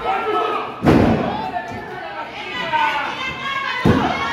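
Wrestlers landing on the wrestling ring's canvas: two heavy thuds, about a second in and again near the end, with voices calling out between them.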